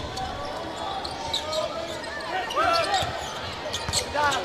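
Basketball being dribbled on a hardwood court, with short sneaker squeaks and steady arena crowd noise; a sharp ball bounce comes near the end.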